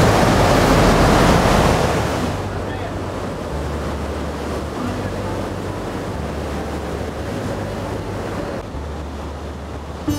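Ocean surf washing onto a beach, with wind buffeting the microphone: louder for the first two seconds, then a steadier, quieter wash.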